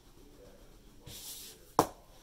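Fingertip rubbing over a pressed-powder blush in an eyeshadow palette: a soft brushing hiss about a second in that lasts about half a second. Near the end comes a single sharp tap or knock as the palette is handled, the loudest sound.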